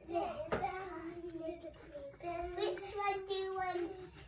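A young child singing in the background, in long held notes. A single sharp knock comes about half a second in.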